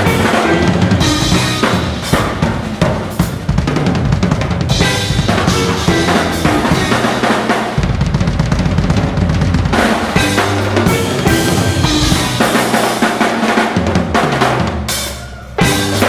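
Drum kit played live in a busy, dense passage: rapid snare, bass drum and tom hits with cymbal wash, over low held bass notes. Near the end the playing thins out for a moment, then comes back in with a sudden loud hit.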